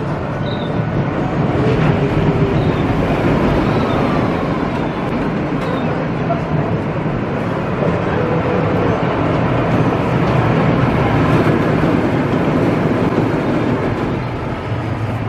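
Steel roller coaster train running along its track, a steady loud rumble of wheels on steel rails that builds a little after the start and holds until near the end.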